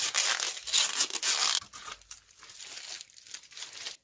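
Adhesive tape being torn off and a rubber glove pulled off the neck of a large glass bottle. The tearing, crinkling noise is loudest in the first second and a half, then quieter rustling follows.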